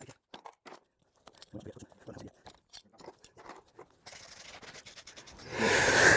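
Farrier's shoe pullers working a horseshoe off a hoof: faint, scattered clicks and crunches of metal on nails and horn.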